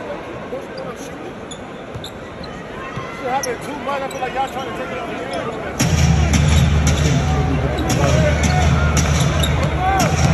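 Arena crowd murmur with scattered nearby voices, then about six seconds in, loud music with a heavy, repeating bass beat starts over the arena sound system.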